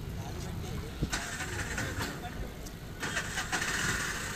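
Low rumble of a vehicle engine running close by, with a hissing noise that swells about a second in and again near the end, and faint voices.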